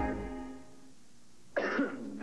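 A commercial jingle's last sung note dies away, then after a short lull a person coughs hard near the end.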